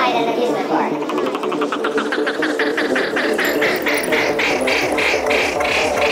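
Full-on psytrance building up: a fast, evenly repeating synth pulse that grows brighter and louder, with little deep bass until low beats come in strongly near the end.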